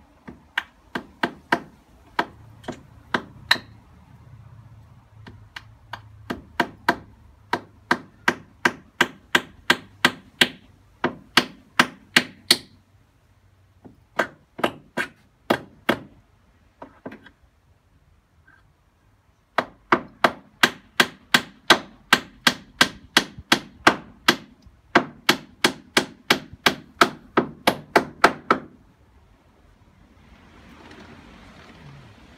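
A hammer driving nails into rough-sawn timber paling on the side of a deck: quick runs of sharp strikes, about three a second, stopping briefly between nails.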